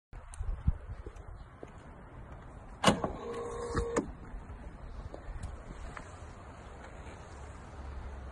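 Electric door-release actuator of an SSC Tuatara: a sharp click, a brief motor whir lasting under a second, then a second click, as the door is unlatched. A low rumble runs underneath, with a few small clicks before it.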